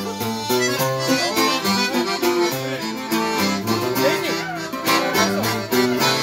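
Accordion playing a melody run in an instrumental break between sung verses, over a strummed acoustic guitar keeping the rhythm.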